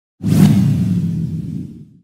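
Logo sting sound effect: a sudden whoosh with a deep rumble that starts abruptly and fades away over about a second and a half.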